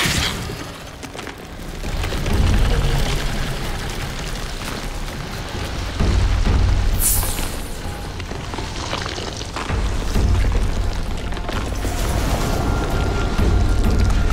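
Horror film score: deep low booms swell every few seconds, with a sharp hissing whoosh about seven seconds in and a thin high held tone entering near the end.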